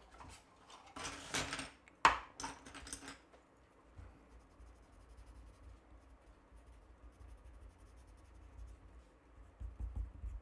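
Pen and felt-tip marker scratching and rubbing on paper, with rustling and a sharp click about two seconds in; from about five seconds on, fainter quick strokes of a marker colouring in.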